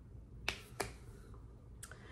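Two short, sharp clicks about a third of a second apart over faint room tone.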